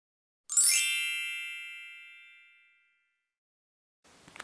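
A magical chime sound effect: a quick shimmer of many high, bell-like tones about half a second in, which rings on and fades away over about two seconds.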